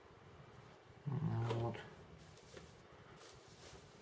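A brief low, voice-like sound lasting under a second, about a second in, followed by a few faint light clicks.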